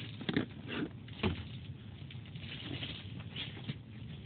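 A few light knocks and clicks of a fountain pen being handled and set down on a tabletop in the first second and a half, then faint handling rustle.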